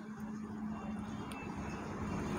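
Faint steady background hum with low noise, with no distinct event standing out.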